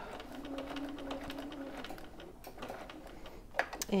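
Bernina electric sewing machine stitching a short straight seam. It runs with a steady hum for about two seconds, then stops, followed by a few light clicks.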